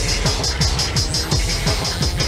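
Hardtek (free tekno) DJ mix: a fast, steady kick drum whose every beat drops in pitch, over an even, repeating hi-hat pattern.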